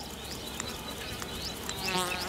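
Insects chirping in the grass: a short, high, rising chirp repeating about twice a second over a steady background hiss.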